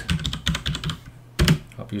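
Typing on a computer keyboard: a quick run of key clicks lasting about a second, then a single keystroke shortly after.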